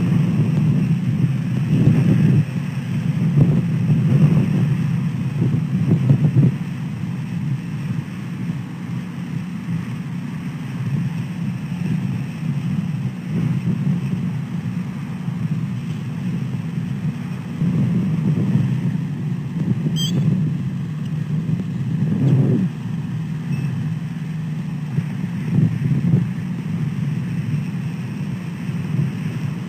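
Wind buffeting the outdoor nest camera's microphone: a low rumble that rises and falls in gusts, strongest in the first few seconds and again about two-thirds of the way through.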